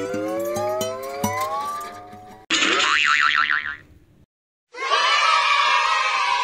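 Cartoon sound effects: a tone climbing in quick steps, with a small click at each step, for about two and a half seconds, then a warbling, wobbling tone for about a second and a half. After a short gap, a dense, rough sound starts about a second before the end.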